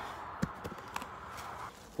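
Faint handling noise at an open beehive: a few light knocks and a soft scraping as a hive tool shifts dry sugar feed on the frames. The scraping dies away shortly before the end.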